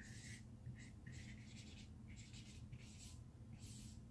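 Dry-erase marker writing on a whiteboard: about six short, faint strokes of the tip as words are written.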